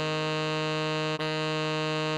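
Tenor saxophone melody sounding written F4, held and then re-tongued on the same pitch a little over a second in. The tone is buzzy and even.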